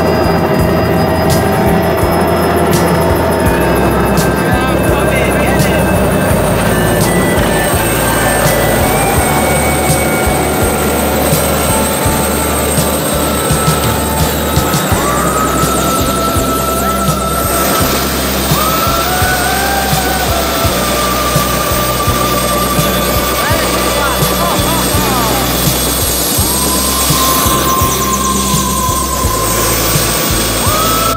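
Helicopter turbine and rotor running on the ground, heard under loud background music whose melody wavers in the second half.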